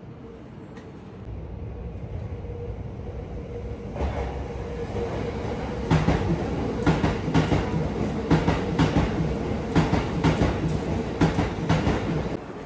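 Electric commuter train running past a station platform: a rumble that builds over the first few seconds, then wheels clacking over rail joints in quick pairs from about six seconds in.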